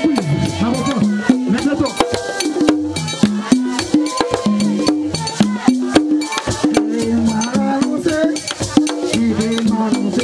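Live band music: a man singing through a microphone over drums and hand percussion, with a dense run of sharp clicks and rattles.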